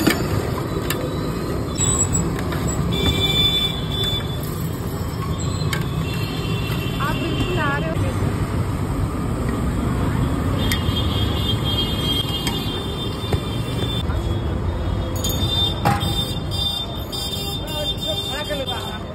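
Busy street traffic: a steady rumble of passing vehicles with vehicle horns tooting about four times, over background voices.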